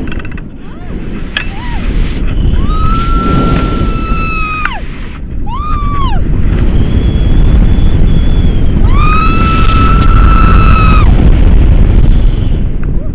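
Wind rushing over the microphone of a tandem paraglider in steep turns, with a woman screaming in long, high held cries. Two cries last about two seconds each, with a short one between them.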